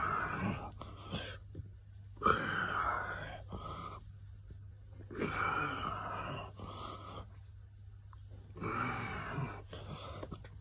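A man breathing hard with effortful groans while doing push-ups, a loud strained exhale every two to three seconds.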